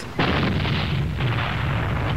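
An explosion: a sudden blast just after the start, followed by a long rumbling tail that slowly fades.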